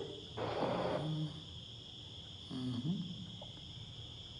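Steady high-pitched insect chirring, with a faint voice murmuring briefly near the start and again just past halfway.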